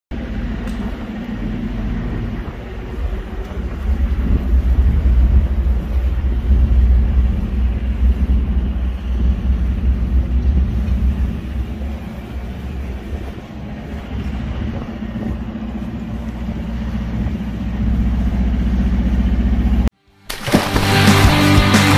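An engine running steadily, a low droning hum that swells and eases a little, cut off suddenly near the end.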